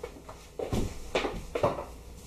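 A few soft footsteps and shuffling, three or four steps in the second half, about half a second apart.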